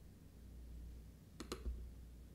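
Two sharp clicks in quick succession about one and a half seconds in, over a low steady hum.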